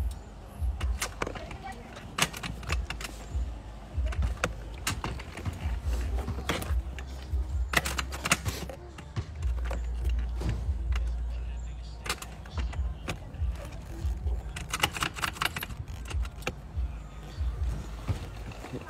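Handling noise from a phone held close against a rider's jacket: irregular clicks, knocks and rustles over a low rumble.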